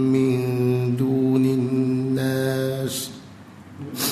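A man's voice reciting the Quran in melodic tajwid style, holding long drawn-out notes. The recitation stops about three seconds in.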